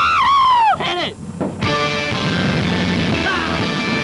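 A long shout that falls in pitch, a second short shout, then rock music starting about a second and a half in.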